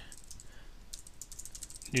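Computer keyboard typing: a quick run of faint key clicks.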